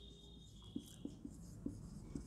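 Faint strokes of a marker pen writing on a whiteboard, a series of short scratches and taps as the letters go down.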